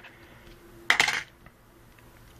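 A brief clatter of sharp plastic clicks about a second in, from a Samsung Gravity SGH-T456 cell phone's battery and casing being handled as the phone is opened to get at the SIM card.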